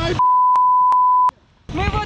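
A censor bleep: a steady single-pitched beep about a second long, laid over a shouted swear word with the rest of the sound muted, cut off abruptly, followed by a short dropout before shouted speech resumes near the end.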